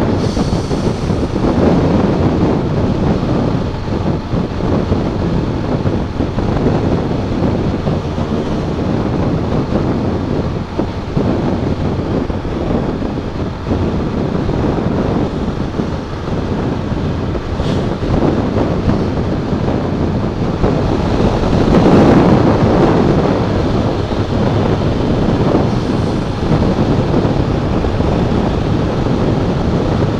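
Wind rushing over the microphone of a camera on a moving motorcycle, a steady loud roar of air with road and engine noise underneath. It swells louder once, about two-thirds of the way through.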